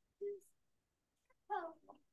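Two brief, faint voice sounds from people answering a question: a short call about a quarter-second in, then a few words of a reply about one and a half seconds in.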